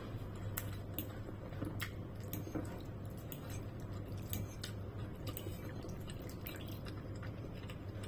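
A person chewing a mouthful of noodles, with frequent small wet mouth clicks, over a steady low hum.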